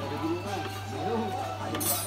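Indistinct background voices and music over a steady low hum, with a brief metallic clink near the end, typical of a hand tool against the motorcycle's engine.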